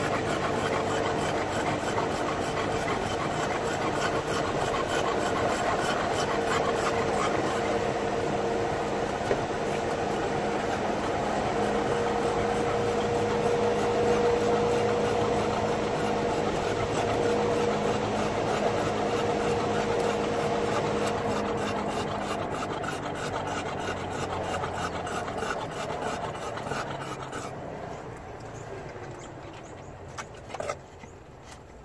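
Car driving, heard from inside the cabin: steady road noise and engine hum that fade away over the last several seconds. An Olde English Bulldog pants with a rasping sound through it.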